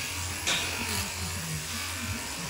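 Electric shearing handpiece running with a steady buzz as it clips fleece from an alpaca cria. There is a brief noisy rustle about half a second in.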